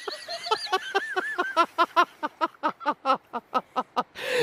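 High-pitched laughter, hard and sustained: a squealing laugh at first, then a rapid run of short 'ha' bursts, about five a second.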